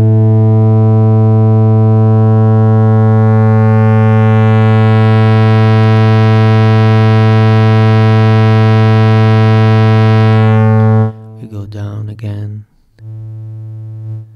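Steady low synthesizer tone: a triangle wave clipped by the Nutone Eurorack distortion module. It grows brighter as the drive is raised and the wave is pushed toward square-wave clipping. About eleven seconds in it drops sharply in level, and near the end it is a softer, clean triangle tone.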